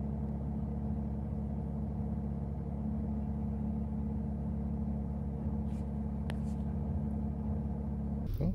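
Car engine idling: a steady low hum with an even set of low tones that holds without change.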